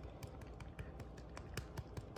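Orange tabby cat crunching dry kibble from its bowl: faint, quick, irregular crunches, about six a second.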